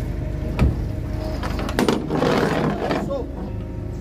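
A vehicle engine idling with a steady low hum, with a sharp knock about half a second in and a stretch of rustling and handling noise around the second and third seconds.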